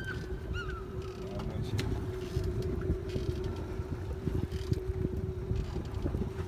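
Boat engine running at a steady hum, with wind buffeting the microphone.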